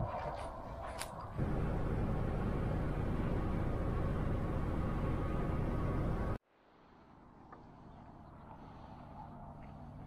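Steady road and wind noise inside a vehicle cruising down a highway, starting about a second and a half in after a short stretch of wind on the microphone. It cuts off suddenly a little after six seconds, leaving a faint steady hum of distant highway traffic.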